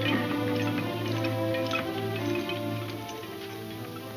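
Dramatic film-score background music: a held low note under sustained higher tones, with short ticking notes over it.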